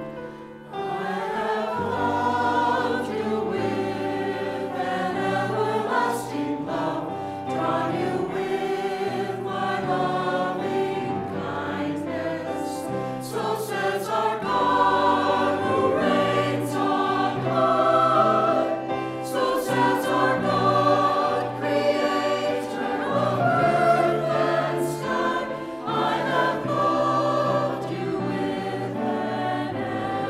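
Mixed church choir of men's and women's voices singing in harmony, coming in about a second in.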